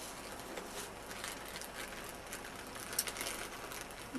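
Bubble-lined paper mailing envelope and a clear plastic bag rustling as the bag is drawn out by hand, soft and continuous, with a sharper crinkle about three seconds in.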